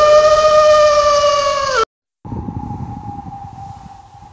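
Intro sound effect: a loud siren-like wail that rises in pitch, holds, and cuts off sharply about two seconds in. After a short gap, a quieter steady high tone fades away.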